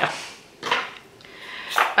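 Small plastic wax-melt cups being handled and set down on a table: a couple of short, light clicks with a soft rustle between them.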